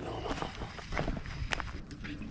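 Footsteps on dry grass and leaf litter, about four steps roughly half a second apart, with a low wind rumble on the microphone.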